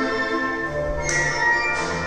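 Recorded classical ballet music with sustained chords, a strong accented chord about a second in.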